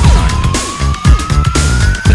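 1990 electro/acid house track: a kick drum and bass about twice a second under a single long tone that climbs slowly and steadily in pitch, like a siren.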